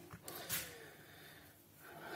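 A man's short, faint intake of breath about half a second in, then near silence: room tone.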